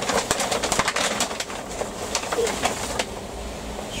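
Rustling and quick light clicks of hands handling small plastic plant pots and a plastic tub of vermiculite during seed sowing.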